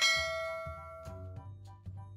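A bell-like 'ding' notification sound effect: one bright chime that rings and fades away over about a second and a half, over soft background music.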